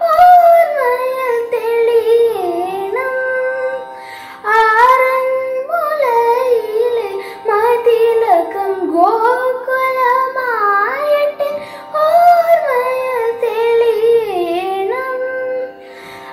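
A young girl singing a Malayalam devotional song solo, in winding phrases that glide up and down in pitch over a steady drone. She breaks off briefly about four seconds in.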